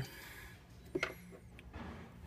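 Faint trickle of engine coolant running from the radiator's drain into a drain pan as the radiator finishes draining, with one light click about a second in.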